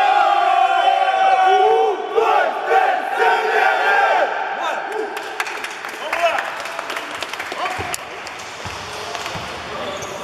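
A basketball team's huddle cry: many male voices shouting together in one long held yell that breaks off about two seconds in. Shorter shouts follow, then quieter crowd chatter in a large gym with scattered sharp knocks.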